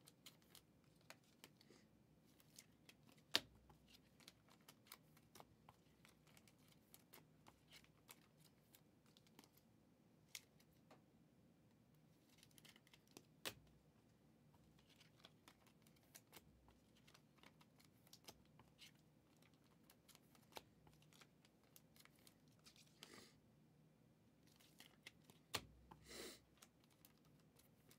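Faint, scattered clicks and light rustling of trading cards being handled and put into plastic sleeves and hard cases, with two sharper clicks standing out, one early on and one about halfway through.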